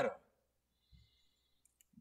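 A quiet pause at a pulpit microphone: a soft low thump about halfway through, then two faint sharp clicks just before speech starts again.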